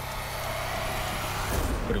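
A steady rumbling drone with a faint held tone, swelling near the end: trailer sound design between lines of narration.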